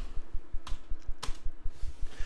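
Typing on a computer keyboard: a few separate keystrokes.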